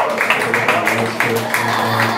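Audience clapping and cheering over background music with a pulsing bass line.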